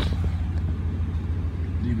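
Engine of a 1993 GMC Suburban idling: a steady low rumble that holds even throughout.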